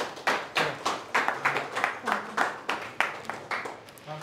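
Hands clapping in a steady run of distinct, sharp claps, about four a second, easing off near the end.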